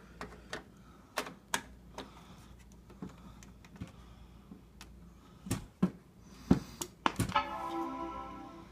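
Multimeter probe tips clicking and tapping against power-supply connector pins as they are set in place, a dozen scattered sharp clicks over a faint steady hum. Near the end a short steady pitched tone sounds as the meter settles on the −12 V reading.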